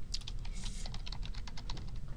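Typing on a computer keyboard: a quick run of about a dozen key clicks as an email address is typed in.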